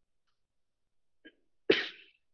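A person's single short cough, sudden and loud, near the end, with a faint brief sound just before it.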